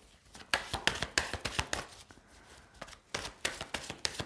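A deck of tarot cards being shuffled by hand: irregular soft clicks and slaps of cards against each other, with a short lull about halfway through before the shuffling picks up again.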